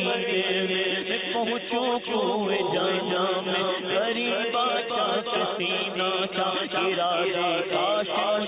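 A man's voice singing an Urdu naat (devotional poem) in long, wavering, ornamented melodic lines over a steady low drone.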